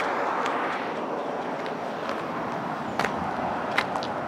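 Steady traffic noise from a busy road, with two short sharp clicks near the end.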